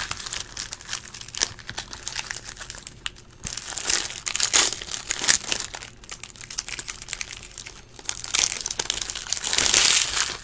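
Foil trading-card pack wrappers crinkling and tearing as they are ripped open by hand, in irregular bursts, loudest near the end.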